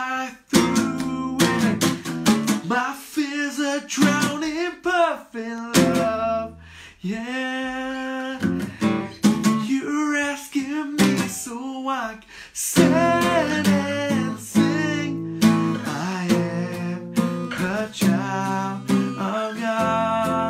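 A man singing to his own strummed Takamine acoustic guitar, steady chord strums under the sung melody.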